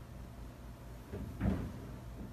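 Steady low hum of a quiet room, with one brief soft noise about a second and a half in.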